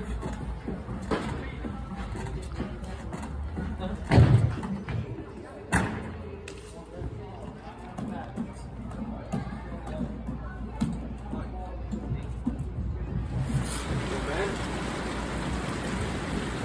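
Gym ambience: indistinct background voices and faint music over a low hum, with two sharp thuds about four and six seconds in.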